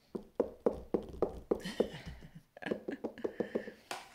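A quick run of light taps or knocks, about five a second.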